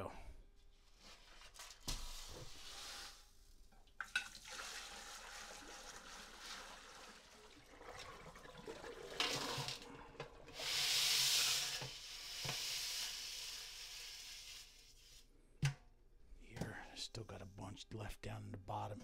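Water being poured out of a large aluminium stockpot into a plastic tub in a stainless-steel sink, decanting the quench water off gold flakes. The pour splashes steadily and swells to a heavy gush in the middle before tapering off, with a few knocks of the pot along the way.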